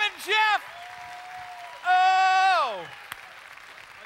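Audience applauding, with a voice whooping twice right at the start and then giving one long held whoop about two seconds in that slides down in pitch as it ends.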